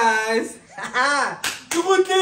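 A man laughing hard in three long, loud peals whose pitch swoops up and down. Two sharp claps come in a quick pair about one and a half seconds in.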